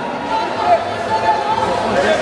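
Several people's voices talking and calling out over one another: crowd chatter in a large hall.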